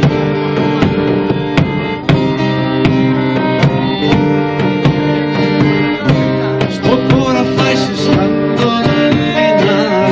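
Live acoustic folk music: acoustic guitars strummed, a button accordion sounding sustained chords and melody, and a drum beating steady time.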